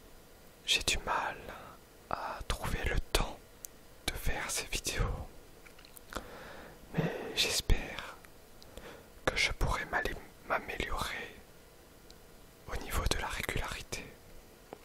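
Close-miked French whispering for ASMR, in short phrases with brief pauses between them.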